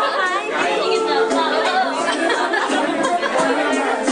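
Several people talking at once in loud, overlapping chatter.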